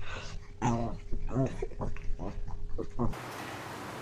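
A small dog's short, repeated vocal cries while it play-fights with a cat. The cries cut off abruptly about three seconds in, and a steady hiss follows.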